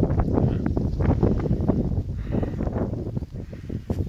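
Wind buffeting a phone microphone outdoors: a loud, rough rumble with crackling from gusts and handling as the phone is panned.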